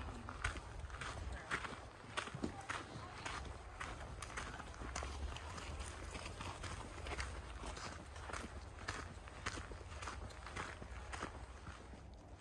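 Footsteps on a dry dirt hiking trail at a steady walking pace, about two steps a second.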